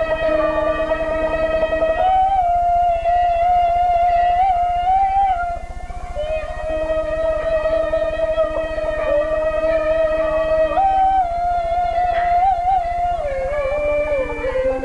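Peking opera singing in a high female-role (qingyi) voice: the long, drawn-out, slightly wavering held notes of a daoban opening line, with jinghu fiddle accompaniment. The held pitch steps up about two seconds in, breaks off briefly about six seconds in, and glides down near the end.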